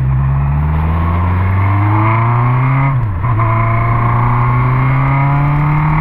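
Honda CB600F Hornet's inline-four engine through an Atalla 4x1 aftermarket exhaust, accelerating hard from a pull-away. The pitch climbs in a low gear, drops at an upshift about halfway through, then climbs again in the next gear.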